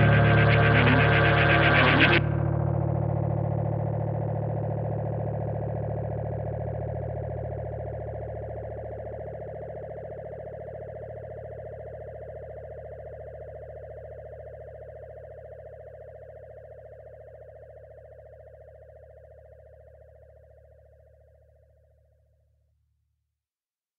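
The closing of an instrumental psychedelic rock track. The full band plays loud, distorted and effects-laden until about two seconds in, then stops abruptly. It leaves a final held chord with deep bass notes that rings on and slowly fades to silence near the end.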